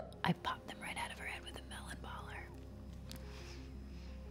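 A woman whispering breathily for the first two and a half seconds, starting with a sharp loud breath, over a quiet film score of slow, held notes that step from one pitch to the next.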